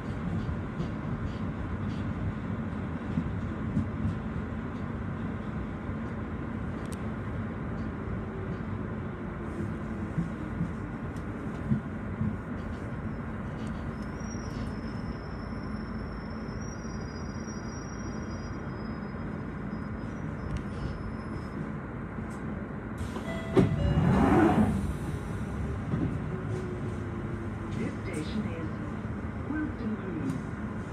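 London Underground Jubilee line train running with a steady rumble as it slows into a station, its motor whine falling in pitch and a brief high brake squeal about halfway through. A louder, short pitched burst comes near the end.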